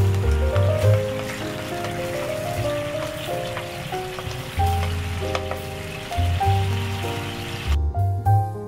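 Butter and pickled-plum paste sizzling and crackling in a non-stick frying pan, stirred with a wooden spatula. Soft keyboard background music plays over it, and the sizzling cuts off just before the end, leaving only the music.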